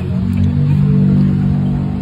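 A vehicle horn sounding one long, loud, low blast of about two and a half seconds, at a steady pitch.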